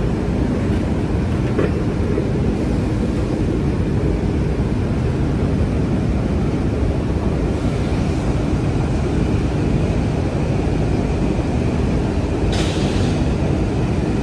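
Steady, loud low rumbling background noise, with a brief hiss near the end.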